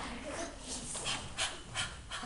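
A large group of children breathing out together in short, sharp puffs, as in a choir's breathing warm-up, with several breathy bursts in the second half.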